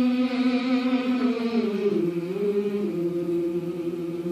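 Gospel choir singing a long sustained chord that steps down in pitch about halfway through and is then held.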